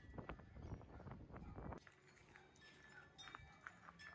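Faint wind buffeting the microphone, with a few handling knocks, that dies away a little under two seconds in, leaving quiet outdoor background with a few faint high ringing tones.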